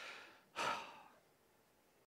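A man sighs once: a breathy exhale about half a second in that fades away within half a second.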